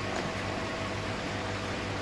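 Jecod/Jebao MA100 linear diaphragm air pump running steadily: an even low hum with a hiss of air. The hum is a bit quieter than that of a Charles Austen ET80.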